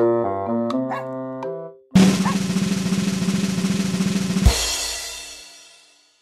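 Light background music with pitched, keyboard-like notes, cut off by an added snare-drum-roll sound effect that runs about two and a half seconds and ends in a cymbal crash that rings away to silence.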